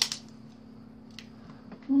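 Quiet room tone with a steady low hum, a sharp click right at the start and a faint tick about a second in. A voice says "ooh" at the very end.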